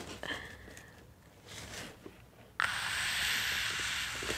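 Faint handling of a cardboard box, then, past halfway, a woman's sudden long breathy squeal of excitement. The squeal is mostly air, held steady.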